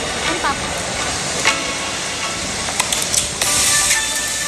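A steady outdoor hiss, with a brief snatch of voices just after the start. Music with held notes comes in near the end.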